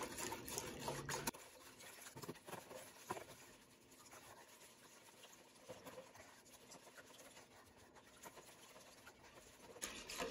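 Faint scraping and light ticking of a wire whisk beating a runny egg-and-oil cake batter in a plastic bowl, a little louder in the first second or so, then quieter.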